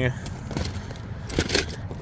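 A few light clicks and rattles of small die-cast toy cars being handled in the plastic tray of a carrying case, over a low background hum.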